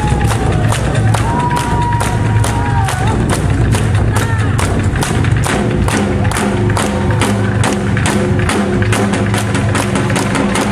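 Korean traditional drums (janggu hourglass drum, a large buk and barrel drums on stands) beaten together in a steady rhythm of about three to four strokes a second. A held, wavering higher tone sounds over the first three seconds, and steady lower notes join about halfway.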